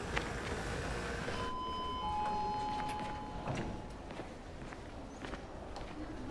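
A man's footsteps as he hurries on hard ground, over a steady background noise. From about a second and a half in, a few thin steady tones sound for about two seconds.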